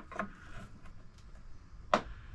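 Faint handling noise of metal pipe fittings and a hand tool on a booster pump, with a few light clicks and one sharp click near the end, as a leaking threaded fitting is worked on.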